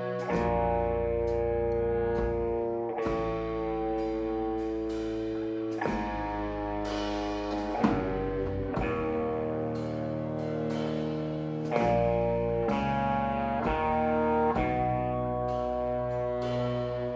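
Slow live band music: electric guitar chords struck and left ringing, a new chord about every three seconds, with drum and cymbal hits on the changes and one sharp hit a little before halfway.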